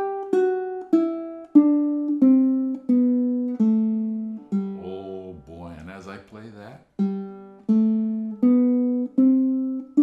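Baritone ukulele, a compact 19-inch body of Amazon rosewood back and sides with a sinker redwood top, freshly strung, playing a scale one plucked note at a time. Each note rings and fades. The notes step down for the first half, then after a short pause climb back up.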